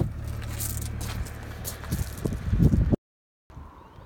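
Car boot floor panel being handled and lowered over the spare wheel well: a loud thump at the start, scraping and handling noise, then a few louder knocks shortly before the sound cuts out for a moment.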